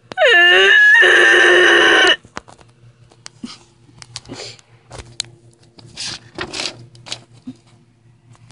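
A loud, strained wail from a person's voice, its pitch sliding down over the first half-second and then held as a high screech until it cuts off about two seconds in. After it come only faint clicks and rustles.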